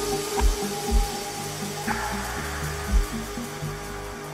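Chilled electronic music played live on hardware synths and a drum machine: a stepping synth bassline under a held pad, with deep kick drums in an uneven pattern and a sharp hit about two seconds in.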